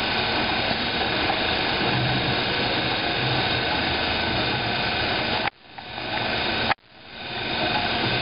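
Steady, dense mechanical noise of a factory floor where a motorized roller conveyor is running and carrying a load along by itself. About five and a half seconds in, the sound cuts out suddenly for about a second, then fades back up to the same steady noise.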